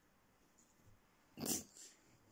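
A cat's short, sharp breathy snort, about one and a half seconds in, with a smaller one just after.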